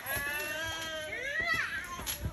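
A young child's high-pitched, drawn-out wordless vocalizing: a long held note that glides upward about a second and a half in.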